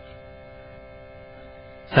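A steady, even drone of several held tones, quieter than the talk around it: a background drone that runs on beneath the discourse.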